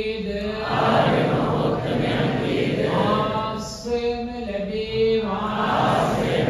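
Buddhist chanting: a lead male voice holding long, steady chanted notes, alternating with a blurred wash of many voices chanting together, about a second in and again near the end.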